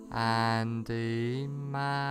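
Slow, calm meditation background music: long held notes that change every half second or so, one of them sliding up in pitch about a second in.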